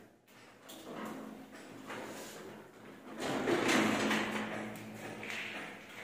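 Irregular scraping and rubbing strokes as plaster of Paris is worked by hand onto a ceiling moulding. A low steady hum joins in about halfway, during the loudest stretch.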